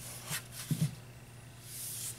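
Hands handling the plastic housing and small fan assembly of an opened space heater: a couple of soft knocks in the first second, then a short scraping hiss near the end.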